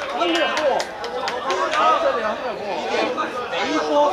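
Indistinct chatter: several voices talking over one another, with no single clear speaker.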